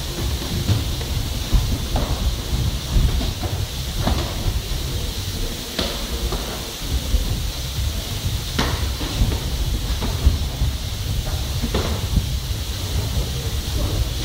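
Scattered sharp slaps and thuds of gloved punches and shin-guarded kicks landing during sparring, about half a dozen spread irregularly, over a steady low rumble and hiss.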